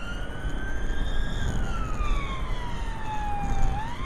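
Police car siren wailing, one slow rise and fall in pitch that starts rising again near the end, heard from inside the pursuing police car over the low rumble of its engine and tyres at speed.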